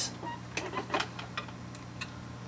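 Cables and a VGA connector being handled and plugged into a small receiver box: several light, sharp clicks and knocks, over a steady low hum.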